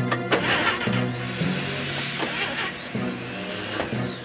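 A minibus engine being cranked over and over without catching, the battery running low, under background music.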